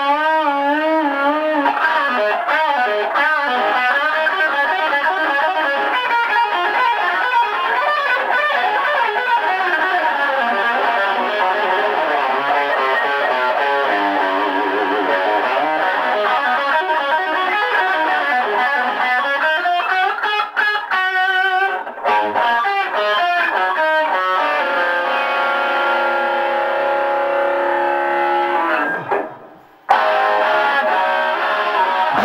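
Distorted electric guitar, a Les Paul-style guitar through a Marshall amp, playing a lead line with bent notes and wide vibrato, moving to long held notes in the later part. Near the end it fades away quickly.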